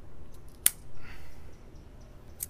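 Cigar cutter snipping the cap off a cigar: one sharp snap about two-thirds of a second in, followed by a brief softer rustle.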